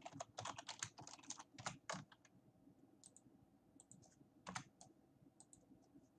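Faint typing on a computer keyboard: a quick run of keystrokes over the first two seconds, then scattered single key presses.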